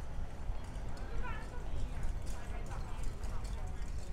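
Footsteps on a paved street in a regular walking rhythm, over a steady low rumble of street noise, with indistinct voices nearby.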